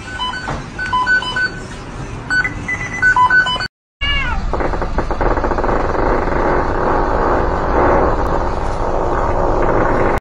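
A run of short, high-pitched notes, then, after a brief break, two cats in a standoff yowling and screeching loudly, opening with a falling cry.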